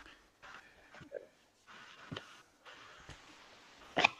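Faint room noise on a video-call line, cutting in and out abruptly, with a few soft clicks.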